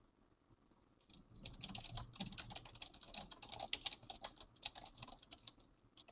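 Typing on a computer keyboard: a fast run of key clicks that starts about a second and a half in and stops shortly before the end.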